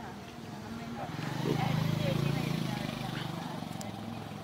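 A motor vehicle's engine rumbling close by, swelling from about a second in and easing off near the end, as if passing or pulling away, with faint voices around it.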